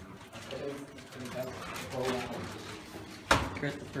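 Indistinct, low human voices with a single sharp knock about three seconds in.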